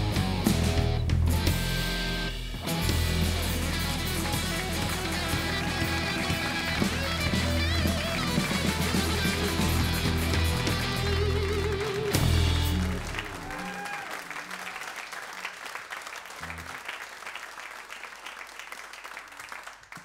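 Live band of acoustic guitar, electric guitar, bass guitar and drums playing the closing bars of a song, ending on a final chord about 13 seconds in. Audience applause follows and fades toward the end.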